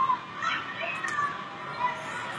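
Background voices: short, high-pitched calls and chatter over a steady hiss.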